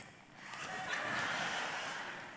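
A large audience laughing softly together, swelling about half a second in and dying away near the end.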